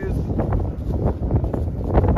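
Wind buffeting the microphone: a loud, gusty low rumble that rises and falls unevenly.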